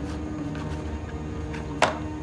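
Background film music of sustained tones, with a few light taps and one sharp knock near the end from small objects being handled on a side table.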